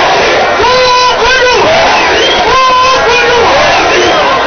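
A woman shouting long, drawn-out rally calls into a microphone over a loudspeaker system, repeated several times, with crowd noise underneath.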